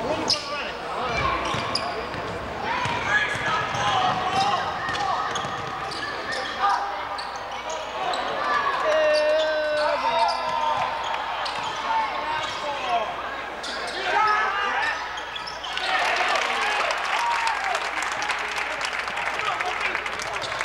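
Gym sound of a basketball game: a ball bouncing on the hardwood floor, sneakers squeaking and players and spectators shouting. About sixteen seconds in, the crowd noise swells.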